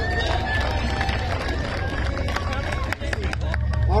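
Crowd applauding, with individual claps sharpest and densest in the last second, over a murmur of voices.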